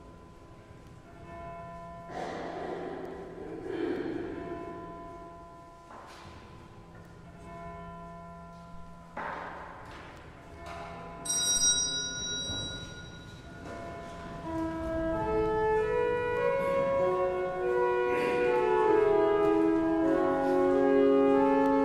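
Music filling the church: ringing notes struck every couple of seconds, then a pipe organ playing sustained chords that grow steadily louder through the second half.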